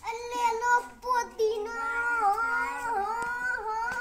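A boy's voice singing in long, drawn-out notes, the pitch wavering up and down, with a short break about a second in.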